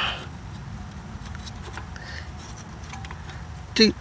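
Faint metallic clicks and scrapes of rusty drum parking-brake parts being worked by hand, over a low steady rumble.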